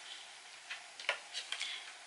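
A few light clicks and taps from a phone case being handled, starting a little under a second in.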